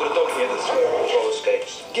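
Movie trailer soundtrack playing from a television's speaker: a voice talking over background music.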